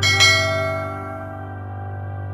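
Bell chime sound effect of a subscribe-button animation, struck just after the start and fading over about a second, over a steady held background music chord.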